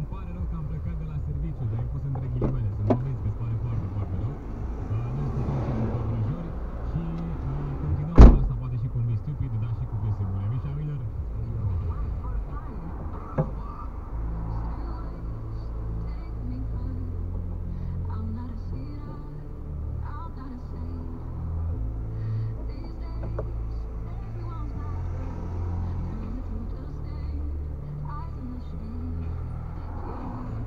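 Music with a low bass line, a wavering low voice or melody over the first part, and one sharp knock about eight seconds in, the loudest sound.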